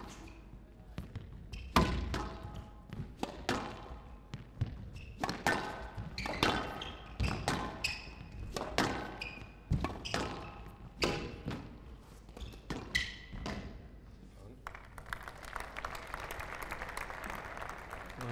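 Squash rally on a glass court: a run of sharp knocks as the ball is struck by rackets and hits the walls and floor, with short shoe squeaks on the court floor. Near the end the rally is won and the crowd applauds.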